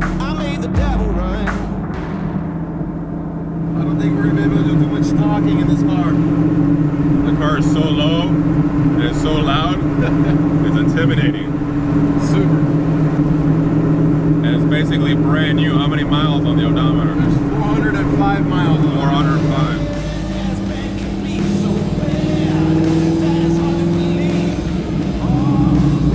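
A song with vocals playing over the steady drone of a Factory Five Type 65 Daytona Coupe's 5.0-litre Coyote V8 as the car cruises, the engine note rising briefly near the end.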